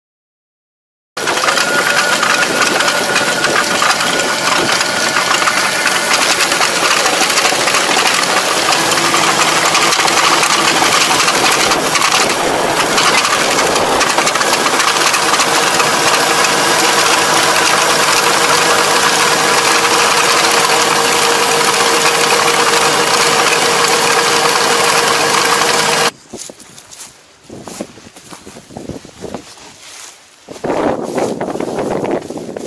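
A tractor engine and a Kobashi levee-plastering machine running, a loud steady drone that starts about a second in. It cuts off abruptly near the end, leaving wind on the microphone.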